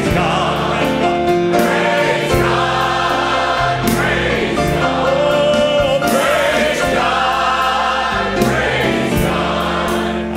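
Gospel choir singing a hymn with a man leading at a microphone, over sustained low accompaniment; the notes are held long, with vibrato, and the chords change every second or two.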